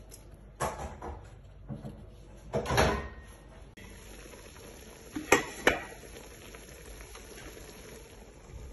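Metal knocks and clinks against a stainless steel cooking pot as meat is seasoned in it: a few knocks and a short scraping rustle in the first three seconds, then two sharp clinks about five and a half seconds in.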